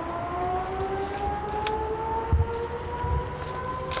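Electric civil-defence siren sounding the city-wide alert during a test of the public warning system, several tones together gliding slowly upward in pitch. Two brief low thumps come about two and three seconds in.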